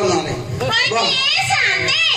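Children's voices shouting and chattering, with a shrill, wavering high voice rising about halfway through.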